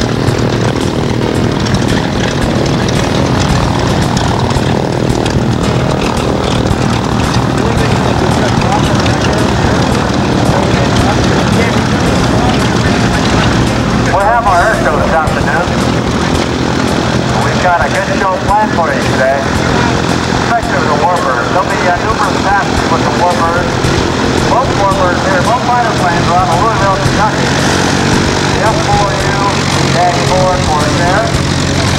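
B-25 Mitchell bomber's twin radial engines running steadily as it taxis past. From about 14 seconds in, people's voices talk over the continuing engine sound.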